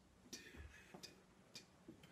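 Near silence: room tone with faint, short ticks about every half second.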